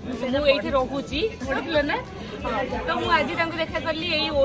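Women talking to the camera, with other people's voices in the background.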